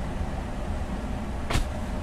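Steady low background hum, with a single sharp click about one and a half seconds in.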